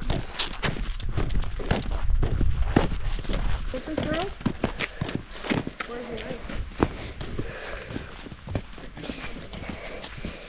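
Footsteps crunching on a dirt road, about two steps a second, with a low rumble in the first few seconds and a brief voice about four seconds in.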